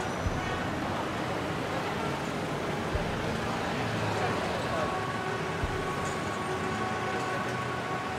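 Steady street ambience: traffic noise with indistinct voices, a few soft low bumps, and faint steady tones joining in over the last few seconds.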